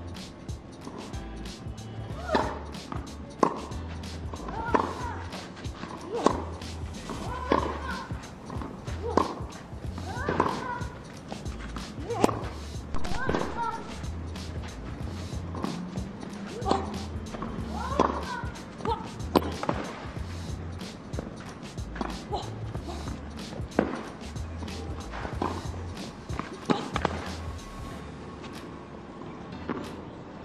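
Tennis rally on a clay court: racquet strikes on the ball, about twenty in a row, one roughly every one and a half seconds. Some strikes come with a short vocal grunt.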